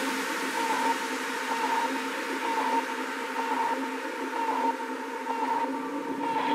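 Techno with the kick drum and bass dropped out: a steady synth drone of a few held tones under a hiss of noise that thins toward the end.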